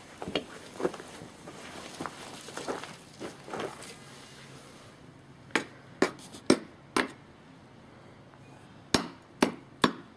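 A small hand spade scraping and digging in loose dry soil, then knocking against a flowerpot: four sharp knocks between about five and a half and seven seconds in, and three more near the end.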